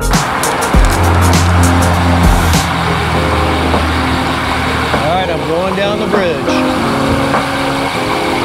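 Background music with a beat fading out over the first couple of seconds. It gives way to steady wind and road noise with passing car traffic on a moving bicycle's camera microphone. A wavering, voice-like sound comes in about five seconds in.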